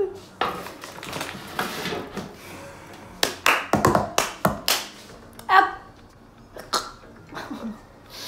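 Round metal cookie cutters being pressed into shortbread dough and set down on a wooden table: a quick run of sharp taps and knocks in the middle, with a brief vocal sound after them.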